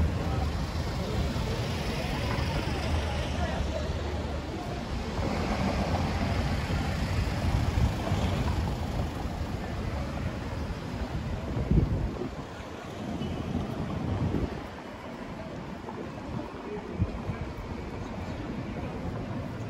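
City street ambience: a small cargo truck's engine running close by with a low rumble that fades out about halfway through, under the voices of passers-by. One short thump about two-thirds of the way in, after which the street is quieter.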